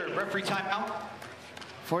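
A man's voice speaking in broadcast commentary for about the first second, then quieter background until the talk resumes at the end.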